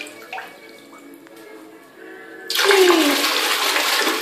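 Water poured by hand from a plastic dipper into a toilet bowl, a loud splashing gush that starts suddenly about two and a half seconds in. This is a bucket flush of a toilet that has no cistern.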